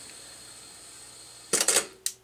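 Faint steady hiss from the Mego 2-XL robot's speaker as its 8-track runs on after the program ends, then, about one and a half seconds in, a short loud burst of clicks and crackle as its red on/off knob is turned to switch it off.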